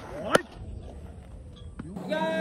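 A fastball smacking into a catcher's leather mitt: one sharp, loud pop about a third of a second in, with a fainter click near the end.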